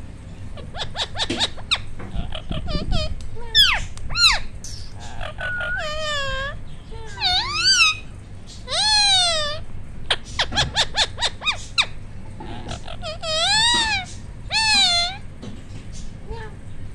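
A ring-necked parakeet calling in quick runs of short, sharp chattering notes, mixed with several drawn-out calls that rise and fall in pitch.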